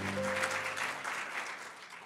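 A music chord ends right at the start, followed by audience applause that fades away over the next two seconds.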